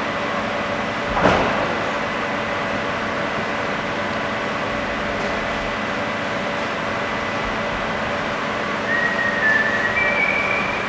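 Steady hum and hiss of a workshop interior, with one sharp knock about a second in and a few brief high tones near the end.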